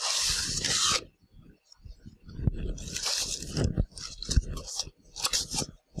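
Clear plastic packaging crinkling and cardboard box flaps scraping as a bag is pulled out of a shipping box. The loudest crinkle comes in the first second, with more rustling and a few sharp knocks of handling later on.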